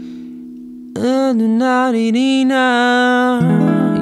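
Electric guitar: an F7 chord with a sharp eleventh rings and fades over the first second. It is played as the tritone substitute for B7, leading to E7 in A minor. About a second in, a new attack comes, and a sung note wavers slightly and is held over the guitar for about two and a half seconds.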